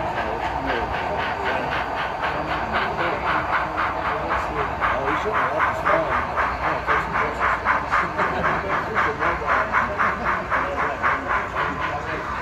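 A model steam locomotive's ESU LokSound sound decoder playing steady steam exhaust chuffs, about three to four a second, through its small onboard speaker.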